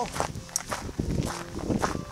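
Footsteps of boots fitted with ice cleats crunching on a gravel trail at a steady walking pace.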